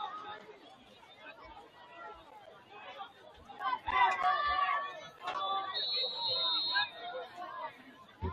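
Spectators chatting near the microphone over a general crowd murmur at an outdoor football game, with a short high steady tone lasting about a second, around six seconds in.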